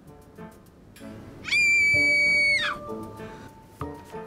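Quiet background music, then about a second and a half in a loud, very high-pitched squeal, held steady on one pitch for just over a second and dropping in pitch as it ends.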